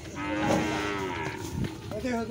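A cow mooing: one long, low call that slides slightly down in pitch and lasts about a second.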